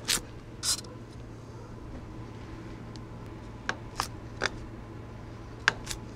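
Large chef's knife cutting down through a crisp pan-pizza crust to the surface beneath, in short sharp crunching cuts: two near the start, three around the middle and two near the end.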